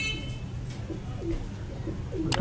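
Domestic pigeons cooing softly over a steady low hum.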